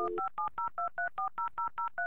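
Touch-tone telephone dialing: a dial tone cuts off just after the start, then about ten short keypad beeps follow rapidly, about five a second, each a different pair of tones as a number is dialed.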